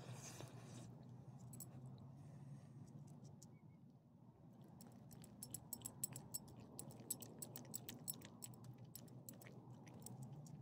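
Dog licking and chewing a scrap of ham off the pavement: quick, wet smacking clicks, thick from about halfway in.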